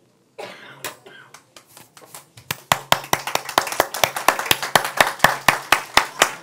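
Hands clapping in a steady quick beat, about five claps a second, starting about two and a half seconds in. Before it, a cough and a few scattered claps.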